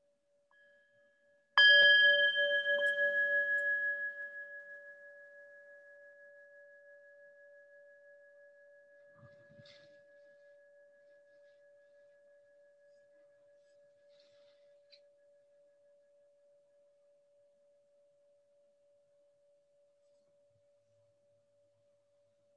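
A meditation bell, a singing bowl, struck once about a second and a half in and left to ring. Its clear tone wavers as it fades slowly away over some fifteen seconds, closing the meditation.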